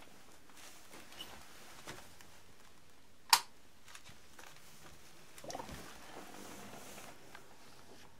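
Bubble airlock on a fermenting wine bucket giving one sharp pop about three seconds in, then a few softer gurgles a couple of seconds later. This is gas escaping through the airlock, the sign the wine is still fermenting.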